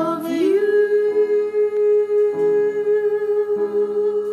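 Two women singing a duet, holding one long note over an instrumental accompaniment whose chords change beneath it about every second.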